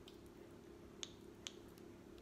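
A metal spoon digging honeycomb out of a plastic box: two small sharp clicks about half a second apart, over a low steady room hum.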